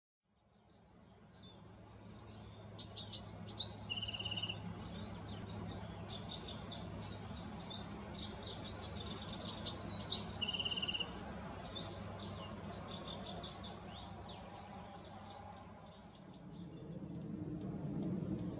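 Bewick's wren singing: two full song phrases, each with a buzzy trill, among repeated short, sharp notes.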